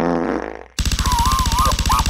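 Cartoon fart sound effect, a loud blast lasting under a second, followed after a brief gap by a rapid buzzing with a warbling high-pitched tone over it.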